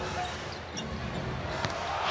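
Live basketball game sound on an arena court: steady crowd noise with brief sneaker squeaks and a short sharp knock near the end.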